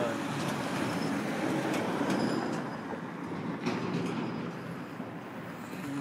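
Steady outdoor background noise with a faint low hum and a few light clicks.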